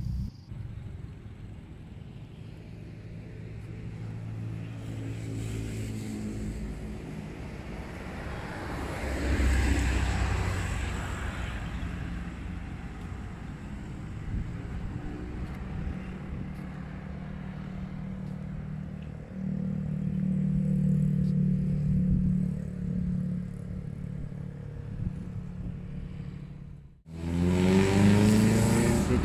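Road traffic: cars and motorbikes going by. The loudest pass is about ten seconds in, and a second, steadier engine pass follows about twenty seconds in.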